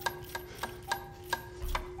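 Rhythmic mouth clicks in a beatbox pattern, about three a second, some with a short pitched pop, over a steady low hum.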